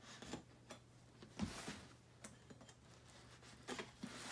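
A small knife slitting the packing tape on a cardboard box: faint scratching and ticking, with one short, louder scrape about a second and a half in.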